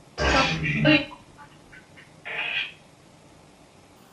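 Short bursts of garbled, voice-like sound from a Necrophonic spirit-box app: a loud burst of about a second near the start and a shorter one about two seconds in.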